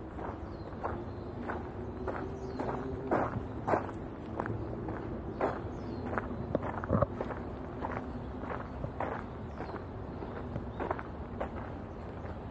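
Footsteps crunching on a packed dirt-and-gravel path, at a steady walking pace of about two steps a second.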